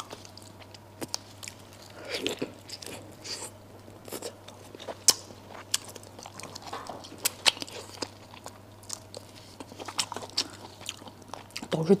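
Close-up eating of braised duck head: chewing with irregular sharp crunches and clicks as the skin, cartilage and small bones are bitten.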